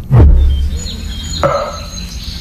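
Film-trailer sound design over a logo card: a deep boom right at the start that slides down in pitch and fades within about a second, with thin high tones hanging over it and a shorter, mid-pitched hit about a second and a half in.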